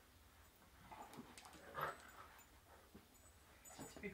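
Faint sounds of a Great Dane and a springer spaniel puppy play-fighting, with one short dog vocal sound about two seconds in.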